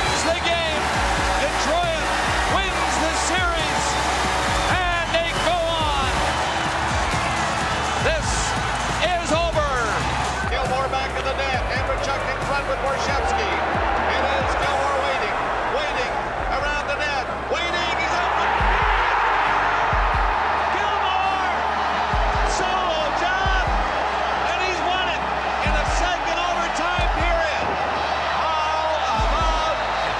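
Ice hockey arena crowd cheering and yelling through goal celebrations, with music and a stepped bass line playing underneath.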